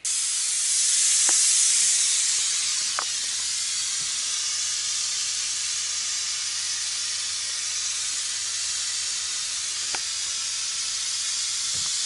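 Pink noise played through a single tweeter behind a passive crossover: a steady hiss with almost all its energy in the treble and little below it, switched on abruptly at the start. It is a frequency-response test signal.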